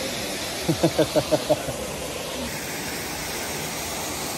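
Steady rushing of a waterfall, an even hiss at a constant level. About a second in, a short burst of a voice cuts through it for under a second.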